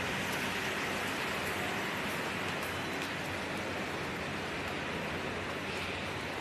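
A steady rushing hiss with a faint low hum underneath.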